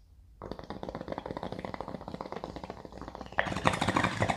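Water bubbling in a zigzag-neck glass bong as smoke is drawn through it: a fast, steady gurgle that turns louder and hissier about three and a half seconds in.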